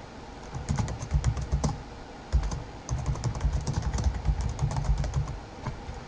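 Typing on a computer keyboard: a quick run of keystrokes, a short pause about two seconds in, then a longer run of keystrokes that stops shortly before the end.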